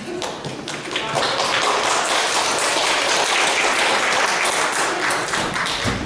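Congregation applauding: many hands clapping, swelling about a second in, then easing off near the end, with a single low thump just before it stops.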